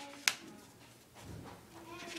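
A single short, crisp paper sound as a picture book's page is handled, then quiet room tone.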